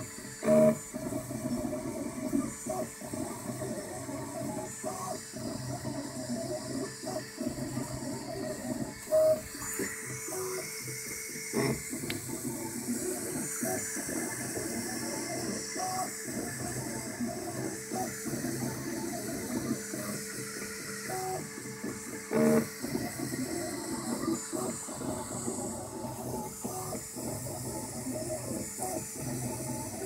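Ultimaker 2 3D printer at work: its stepper motors give pitched tones that jump in pitch with every move of the print head, with brief louder tones about half a second in, about nine seconds in and about twenty-two seconds in. A steady hiss from the printer's cooling fans runs underneath.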